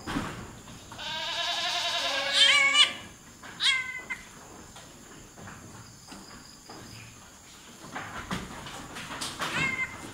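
Goat bleating, typical of a doe in distress during a difficult birth (dystocia) while being helped by hand: a long wavering bleat about a second in, a short one near four seconds, and another near the end.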